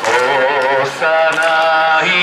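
A man singing a slow melody into a handheld microphone, holding long, slightly wavering notes, in two phrases with a short breath about a second in.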